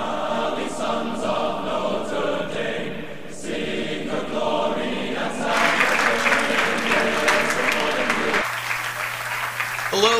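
Choral intro music with massed singing, joined about halfway by crowd cheering and applause. It stops abruptly near the end, leaving a steady low hum.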